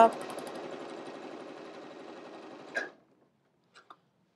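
Juki computerized sewing machine stitching a seam through layered cotton fabric, running steadily and gradually getting quieter, then stopping about three seconds in. A couple of faint clicks follow near the end.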